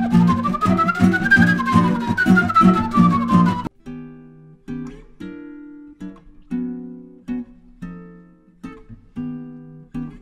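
Nylon-string classical guitar strummed rapidly while a flute plays a sliding melody that rises and falls above it. About three and a half seconds in, the texture cuts off abruptly and the guitar carries on alone with sparse, single plucked notes that ring out.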